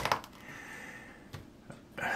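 Quiet room with two faint, short clicks in the second half, from a hand handling small plastic model parts mounted on sticks in a foam block.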